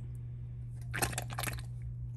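Canned diced tomatoes slopping out of a tipped can into a pot of broth, with a wet splash about a second in.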